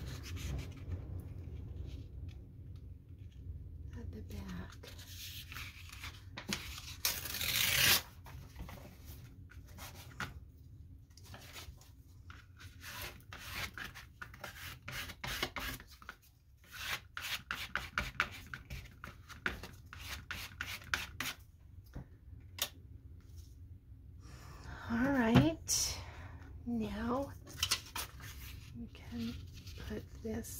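Paper collage work: paper rustling and scraping as a glue brush is worked over the paper, with one loud rip of paper being torn about seven seconds in. A short wordless vocal sound comes about 25 seconds in.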